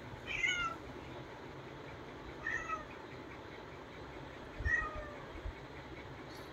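Domestic cat meowing three times: short, high mews about two seconds apart.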